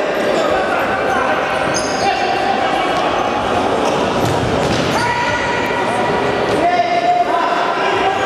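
Indoor futsal match: the ball being kicked and bouncing on the sports-hall floor, with players calling out, all echoing in the large hall.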